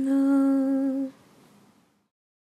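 A woman's unaccompanied voice humming the song's final note, held steady on one pitch and cut off about a second in. A faint room hiss follows and fades out.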